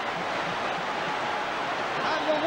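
Large football crowd cheering in one steady, unbroken roar of many voices just after a home goal.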